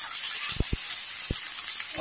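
Chopped vegetables sizzling in hot mustard oil in a kadhai, a steady frying hiss. A few low knocks come through it, two close together a little past halfway and a third shortly after.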